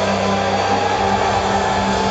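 Loud live heavy-metal band playing, its distorted guitars and cymbals blurred into a steady wash of noise by an overloaded crowd recording, with a held high note ringing over it.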